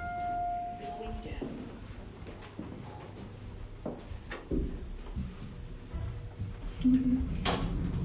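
Elevator sounds: a steady electronic tone that stops about a second in, then small knocks and footsteps as people step into the car. A faint high-pitched whine follows, and a sudden thump near the end.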